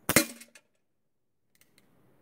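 A pellet gun shot loaded with several pellets at once, the pellets striking a heavy steel bullet box behind a paper target: one sharp crack with a short metallic clang that rings for about half a second.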